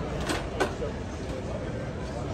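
Ambience of a busy indoor exhibition hall: indistinct voices over a steady low background hum, with two short clicks in the first second.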